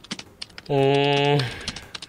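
Computer keyboard typing in scattered quick clicks, with a man's drawn-out voiced yawn at a steady pitch, lasting under a second, about halfway through.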